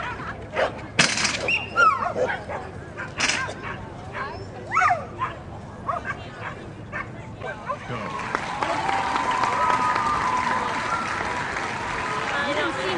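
A dog yipping, whining and squealing excitedly in short sharp bursts, some sliding up or down in pitch: the excited 'pig noises' of a dog watching from the sidelines during an agility run. In the last few seconds a steadier background of people's voices and crowd noise rises.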